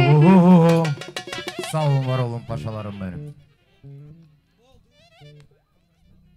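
A live band playing dance music, led by an ornamented, wavering melody line. The music breaks off about three seconds in, leaving only a few faint scattered notes.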